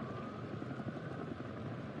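Steady outdoor city ambience: a low, even background hum like distant traffic.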